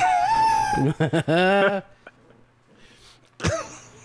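A man's laughter: a long, high-pitched squeal, then a quick run of short laughs, ending about two seconds in.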